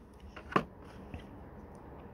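Faint handling of a plastic blister-packed die-cast car card, with one short light tap about half a second in as the card is set down on a wooden table.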